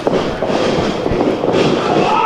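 Steady noise of a live crowd and ring action echoing in a small hall, with faint voices within it.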